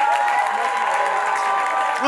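Live audience cheering and clapping, with laughter and voices calling out over it.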